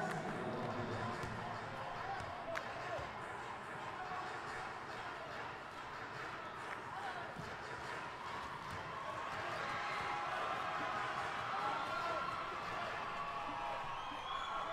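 Wheelchair basketball court ambience: steady murmur of the arena with distant players' and spectators' voices. A basketball bounces on the hardwood floor a few times as sharp knocks.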